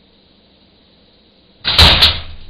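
Wire box trap going off: its door snaps shut near the end with a sudden loud metallic clang that rings on briefly, as the brushtail possum inside trips it. Before it, only a faint steady hiss.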